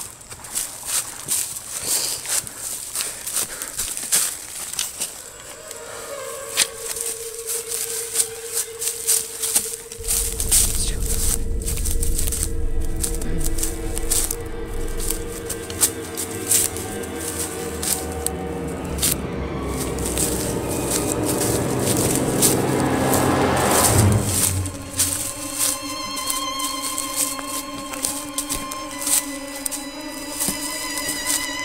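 Horror film score: a held tone comes in about six seconds in, a deep drone joins at about ten seconds and swells to a peak near twenty-four seconds, then gives way to a new set of steady held tones. Irregular crackling and rustling runs under the music.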